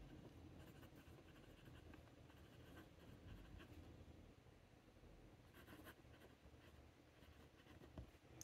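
Faint scratching of a TWSBI Eco fountain pen's broad nib writing on paper, in short strokes.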